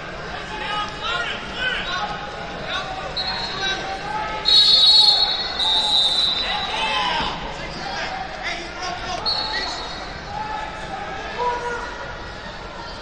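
Crowd chatter echoing in a large gym hall during wrestling matches, with two short, loud, shrill whistle blasts about four and a half and six seconds in. Fainter, shorter whistles come a little before and again about nine seconds in.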